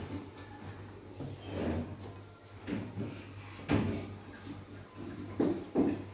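A handful of short, soft knocks and clunks of things being handled in a kitchen, spread unevenly over a few seconds, over a low steady hum.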